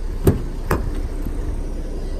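Two sharp clicks about half a second apart as a Ford Explorer ST's rear door handle is pulled and its latch releases to open the door.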